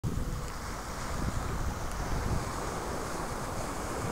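Wind buffeting the microphone in an uneven low rumble, over the steady wash of surf on a sandy beach.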